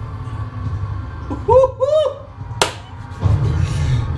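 A film trailer's soundtrack: a low rumbling drone underneath, a short vocal sound about one and a half seconds in, a single sharp hit about two and a half seconds in, and a swell of rumble near the end.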